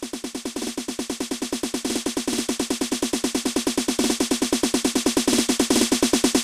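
An electronic drum-roll riser (an uplifter roll loop): fast, even hits at about nine a second that build steadily louder, with the bass cut away.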